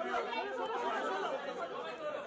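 Several men talking and calling out over one another: the overlapping chatter of a pack of press photographers.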